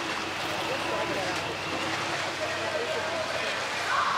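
Indistinct voices of people aboard a tour boat over a steady wash of boat engine and water noise.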